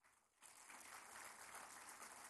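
Near silence, then faint applause from a seated audience begins about half a second in and keeps going.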